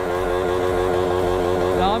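Motorcycle engine held at steady high revs, with voices over it.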